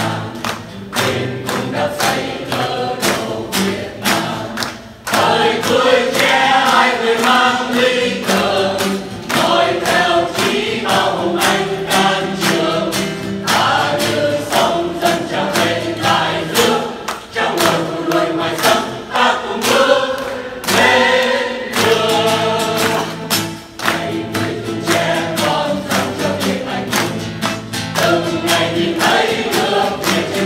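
Mixed choir of men and women singing a Vietnamese du ca song, accompanied by a strummed acoustic guitar keeping a steady beat.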